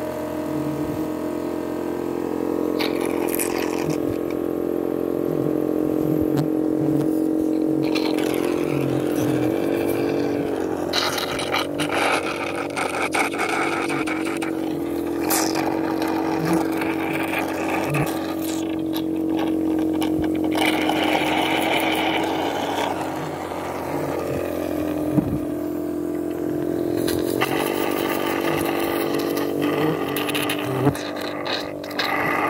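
A small motor running steadily, a humming drone made of several steady tones whose pitch shifts slightly about a third of the way in, with occasional clicks and scrapes over it.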